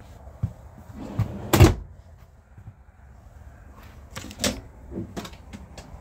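Solid-wood kitchen drawer pushed shut with one loud knock about one and a half seconds in. Lighter knocks of cabinetry being handled follow near the end.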